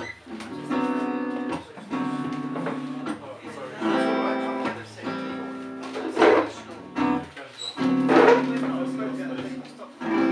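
Guitar playing the instrumental introduction to a song: chords struck about once a second and left to ring, with two harder strums around six and eight seconds in.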